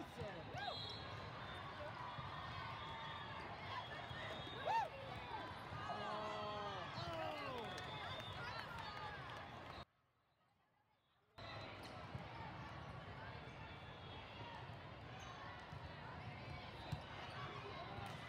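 Sneakers squeaking on an indoor sport court and a volleyball being struck during a rally, over a steady hum of many voices in a large hall. The sound cuts out entirely for about a second and a half midway.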